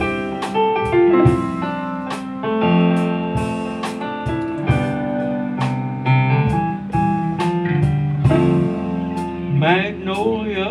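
A live band playing an instrumental passage of a laid-back blues-rock song: piano and electric guitars over bass and drums, at a steady level.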